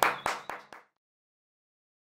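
A short run of handclaps, about four in quick succession, each fainter than the last, stopping under a second in.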